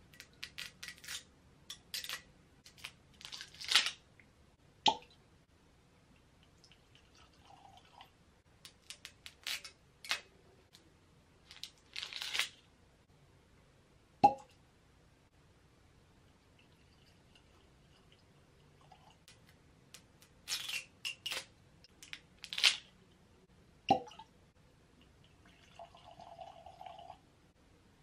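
Corks twisted out of three bottles of Elijah Craig Barrel Proof bourbon: squeaking and scraping, each ending in a sharp pop, the three pops about ten seconds apart. Between them come glass clinks and short pours of whiskey into tasting glasses.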